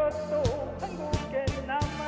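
A singer performing a Korean song over a karaoke backing track, the voice wavering with vibrato over repeated drum hits.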